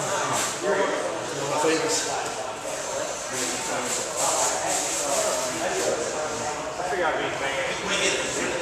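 Indistinct voices talking in a mat room, with the shuffle of two grapplers moving on the mats.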